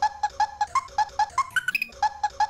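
A short, high-pitched vocal snippet chopped into a rapid stutter loop, about five repeats a second, jumping higher in pitch in steps near the end.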